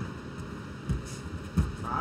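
Two dull thumps from the fighters on the cage canvas, about a second in and again just over half a second later, over a low steady arena hum.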